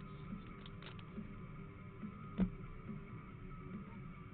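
Quiet background music with a soft beat. A single sharp click from handling a foil trading-card pack comes about two and a half seconds in.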